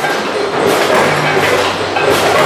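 Loud, steady clattering noise of confectionery factory machinery, with a low hum that comes and goes.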